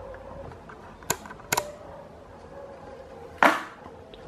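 Handling noise from fan parts being worked off-picture: two sharp clicks about a second apart, then a louder, short rustling rush near the end.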